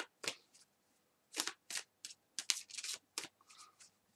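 A deck of oracle cards being shuffled by hand: a series of short strokes at irregular intervals, about a dozen in all.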